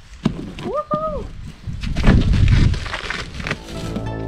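Knife cutting into the plastic wrap and tape of a parcel, with crackling, scraping and crinkling of the plastic. A few sharp clicks come near the start, and a brief hummed vocal sound rises and falls about a second in.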